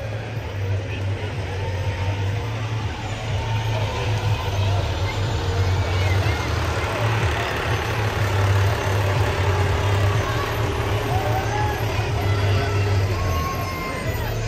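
Heavy diesel dump truck engine running at a slow rolling pace as it passes close by, a low rumble that is loudest about halfway through. Spectators chatter over it.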